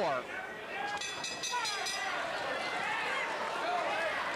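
Boxing arena crowd shouting and talking, with a quick run of rapid sharp strikes from the ring bell about a second in, marking the end of the round.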